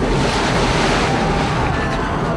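A loud, steady rushing noise, the cartoon sound effect of hot liquid pouring from a cauldron over a castle wall, over faint background music.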